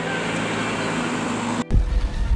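Steady traffic noise of vehicle engines running in stalled traffic, a hiss with a faint low hum. Near the end it breaks off abruptly into a louder low rumble.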